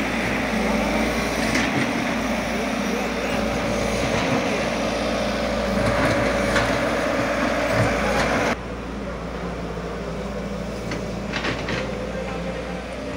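Kato excavator's diesel engine running steadily at close range. About eight and a half seconds in, the sound drops suddenly to a quieter, steady engine hum.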